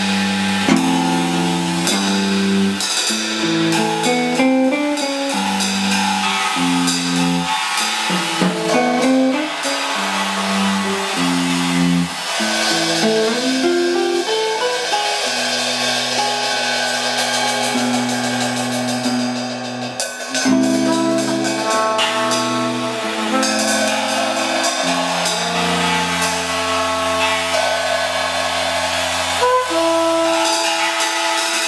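Live jazz trio: archtop electric guitar playing chords and lines over a drum kit played with sticks, cymbals ringing. About halfway in, a cornet comes in with long held notes.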